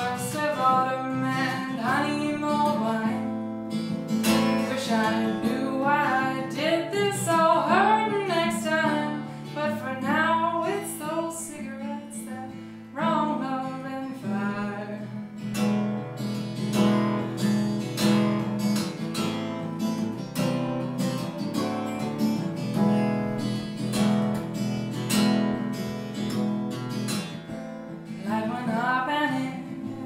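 A woman sings over her own strummed steel-string acoustic guitar. About halfway through, the voice drops out for roughly a dozen seconds of strumming alone, and the singing comes back near the end.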